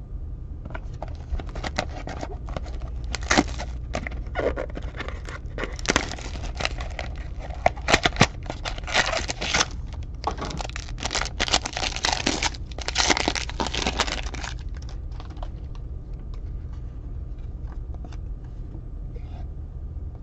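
Hands tearing open a Topps Museum Collection box and its foil card-pack wrapper: repeated bursts of crinkling and tearing for most of the first three-quarters, then only faint light ticks as the cards are handled. A steady low hum runs underneath.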